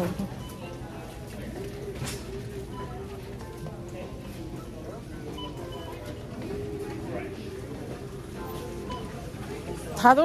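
Faint background music playing over the store's low hum and distant voices, with one light knock about two seconds in.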